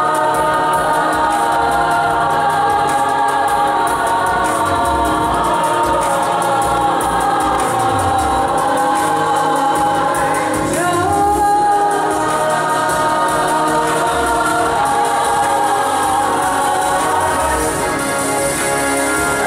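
Large youth choir singing in harmony, with long held chords and a rising slide in the voices about eleven seconds in.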